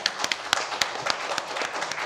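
Applause: many people clapping at once in a dense, steady patter.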